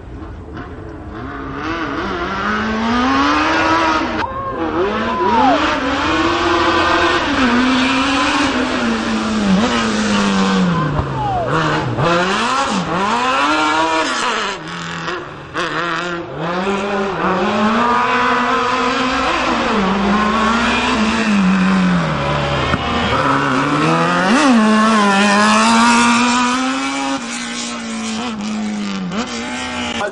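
Piaggio Ape three-wheeler's small engine running hard at high revs up the hill-climb course, loud and continuous. Its pitch climbs and drops again and again, and the sound builds up over the first couple of seconds.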